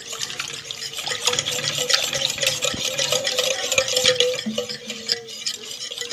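Hand wire whisk beating eggs into warm milk in an enamel saucepan: a fast, continuous clatter of the wires against the pot with liquid sloshing.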